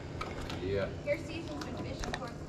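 Mostly speech: a man says "yeah" over low background noise, with a few faint ticks.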